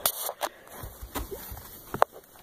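A few light clicks and knocks from handling an open boat storage hatch, with one sharper knock near the end.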